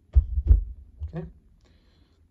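A few dull, low thumps close together, then a weaker one about a second in: handling bumps on the camera or the surface it stands on.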